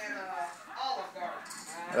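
Drawn-out, moo-like moaning vocal sounds that slide up and down in pitch.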